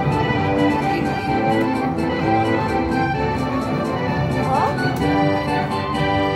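Fu Dai Lian Lian Panda slot machine playing its bonus-win celebration music, held organ-like chords with short clicks throughout while the win meter counts up, and a brief rising chirp about four and a half seconds in.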